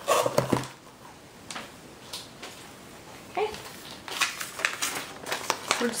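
Handling of a ring-binder planner and its cardboard box: scattered soft taps and paper rustles as it is settled into the box and a paper sheet is laid over it, the rustling and clicking growing busier in the last two seconds.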